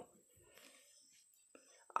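Near silence with a faint breathy sound about half a second in; a woman's voice starts right at the end.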